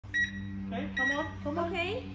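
Handheld security metal detector wand giving two short, high beeps about a second apart.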